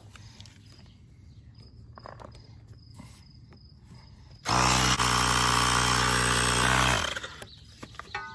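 Small cordless battery-powered tire inflator running steadily for about two and a half seconds, starting a little past halfway and cutting off, pumping air into a flat mower tire that is still seated on its bead. Faint crickets and small handling clicks before it starts.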